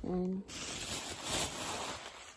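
A short steady vocal hum, then tissue paper rustling and crinkling as it is handled and tucked into a paper gift bag.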